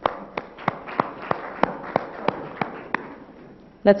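Thin, scattered applause from a small audience: a few irregular hand claps over a light haze of clapping, dying away near the end.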